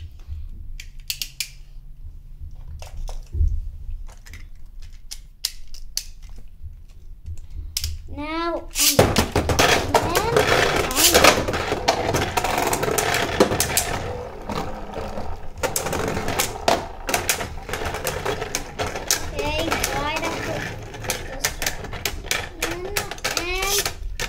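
Two Beyblade Burst spinning tops are launched into a plastic stadium after a few scattered clicks. They spin and clash in the dish, a loud continuous rattling scrape broken by frequent sharp knocks as they collide.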